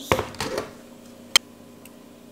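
Kitchen handling noises as pickled jalapeños are fished from a glass jar with a fork: a short scuffing knock at the start, then one sharp click a little over a second in.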